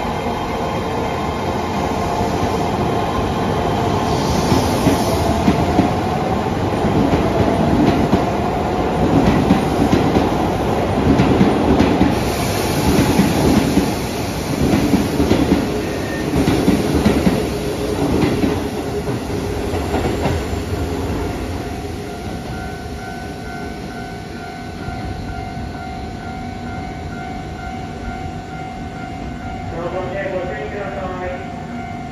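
Keisei 3700 series electric train accelerating away: the traction motors' whine rises in pitch as it picks up speed, then the wheels clack rhythmically over the rail joints as the cars run past. It fades away over the last third, leaving a steady tone.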